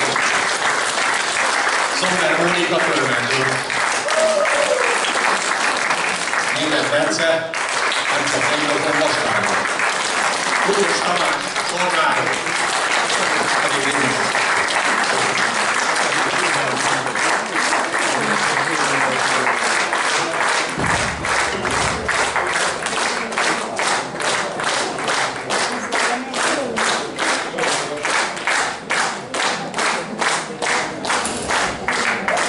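Audience applause with voices over it, turning after about fifteen seconds into rhythmic clapping in unison at about two claps a second.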